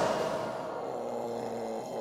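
The tail of a loud blast dying away into a quiet, steady held chord of film score.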